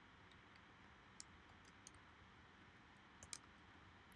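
Near silence with a few faint, scattered computer keyboard keystrokes, the loudest about three seconds in.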